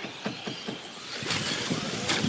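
Radio-controlled short-course trucks running on a dirt track, with a few sharp clicks in the first second and a louder rushing drive noise from about a second in.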